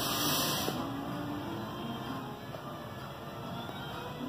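A brief breathy hiss near the start as a man puffs on a briar tobacco pipe, over a steady low background noise.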